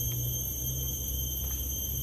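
Steady high-pitched insect drone from the tropical forest, several tones held at once without a break, over a low rumble.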